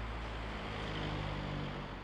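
City street ambience: a steady low rumble of traffic, starting to fade out near the end.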